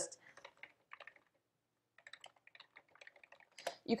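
Computer keyboard being typed on, faint, in two short runs of keystrokes with a pause between them.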